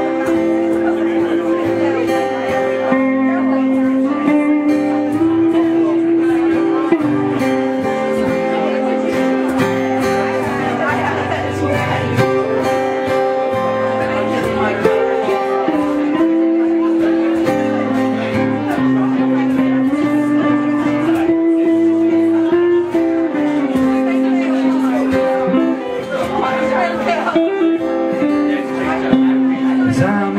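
Live acoustic guitar strumming chords while a Stratocaster-style electric guitar plays a bluesy lead line over it, with audience chatter underneath.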